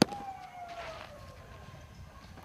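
A baseball smacking into a catcher's leather mitt, one sharp crack right at the start. A faint tone follows, sliding slowly downward for about a second.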